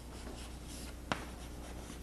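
Chalk writing on a blackboard: faint scratching strokes, with one sharp tap about a second in, over a steady low hum.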